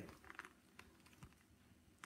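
Near silence with a few faint, scattered taps and clicks of hands handling a held tablet or book.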